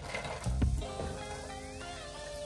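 Background music with held notes and a low beat, with a tone rising steadily in pitch through the second half.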